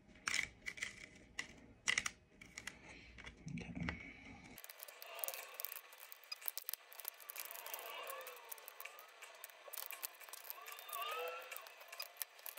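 Faint crackling and rustling of a white-toner transfer sheet being peeled slowly off a printed T-shirt, with scattered small clicks.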